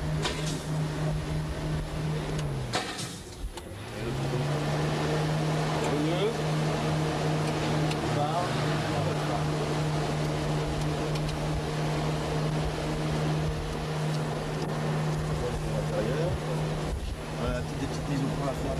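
AC Cobra replica's V8 engine running at a steady pitch under way. About three seconds in, its note falls and quietens for about a second, then picks back up and holds steady again.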